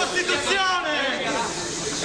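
A jostling crowd of people talking and calling out over one another, with no single clear voice.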